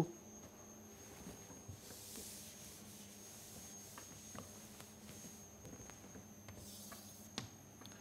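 Faint scratch of chalk drawn across a blackboard, in short strokes, the clearest near the end, with a few light taps.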